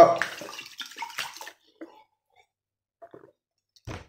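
Water poured from a plastic bottle into a ceramic mug, running for about a second and a half and then stopping, followed by a few faint small sounds.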